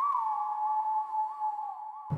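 A high electronic synth tone that wavers gently up and down in pitch, about three times a second, with no beat under it.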